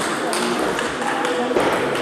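A couple of sharp clicks of celluloid table tennis balls striking tables and bats in a large sports hall, over a murmur of voices.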